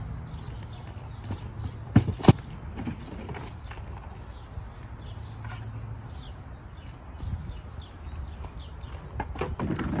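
Gear being unloaded from a car's hatchback: two sharp knocks close together about two seconds in, then lighter knocks and handling noises, over a steady low hum.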